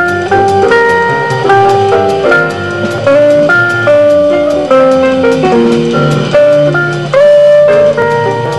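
Small jazz group playing live: archtop guitar and piano carry a melody of held notes over double bass, with a steady cymbal beat from the drum kit.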